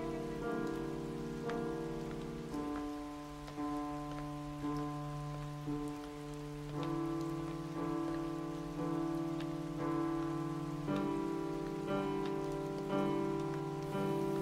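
Steady rain falling on a street, under slow background music: held notes changing about once a second over a sustained low note.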